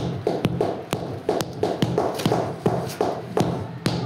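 Mallet tapping a flagstone down into its mortar bed to level it: a quick run of taps, about three or four a second.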